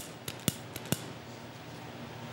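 Hand-held lighter clicking at the Advent candles: about four sharp clicks within the first second.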